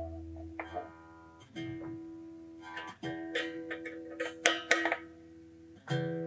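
A Stratocaster string plucked several times and left to ring on one steady note, checked for pitch while the tremolo spring-claw screws are tightened to bring the tuning back up to E. A few sharp clicks come about four and a half seconds in.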